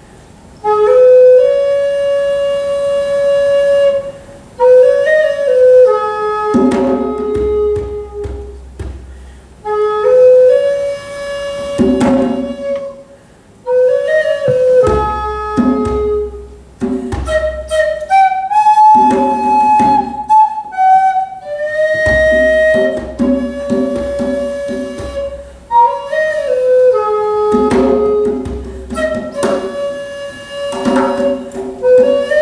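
A wooden Native American-style flute plays a slow melody of long held notes and short quick turns. About six seconds in, a djembe struck with bare hands joins in stretches of drumming under the flute.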